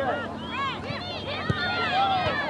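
Overlapping raised voices of spectators and players calling out at a youth soccer game. A single sharp thump comes about one and a half seconds in.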